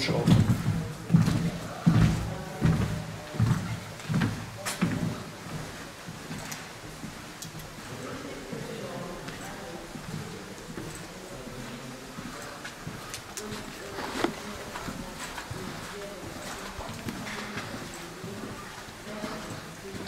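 Footsteps of several people walking on a hard floor, an even tread of about one and a half steps a second over the first five seconds, then softer shuffling with low, indistinct murmuring.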